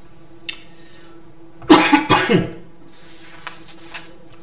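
A man coughing twice in quick succession, loudly, about two seconds in.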